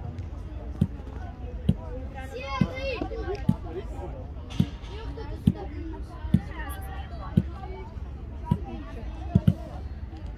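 Evenly spaced dull thumps, about one a second, over a steady low rumble. Distant shouting voices of players and coaches come and go.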